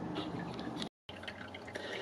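Faint background noise with a few scattered small ticks, broken by a brief total dropout about a second in.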